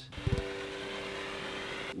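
Background music on acoustic guitar: a chord is plucked about a quarter second in and its notes are left ringing steadily.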